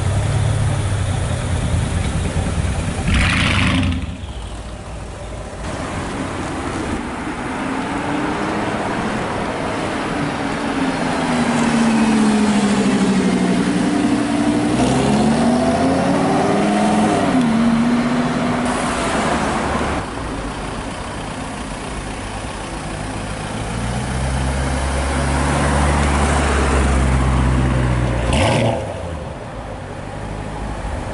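Performance-car engines heard up close in a string of short clips. First a Brabus 850 6.0 biturbo V8 runs at low revs. In the middle a Lamborghini Huracán LP610-4 Spyder's V10 revs up and down, the loudest part. Near the end a deep, low engine rumble follows.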